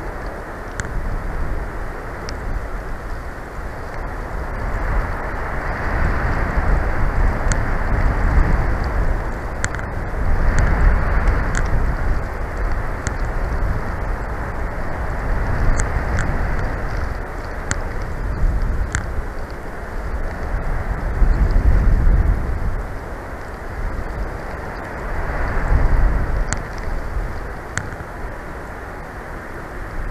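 Gusty wind buffeting the microphone: a loud, low rushing noise that swells and eases every few seconds, with occasional faint ticks.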